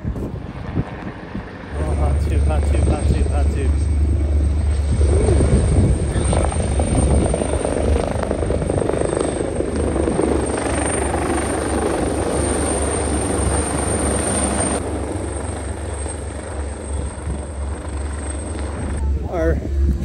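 Helicopter flying low overhead, its rotor beating steadily. It comes in about two seconds in and grows somewhat fainter in the last few seconds.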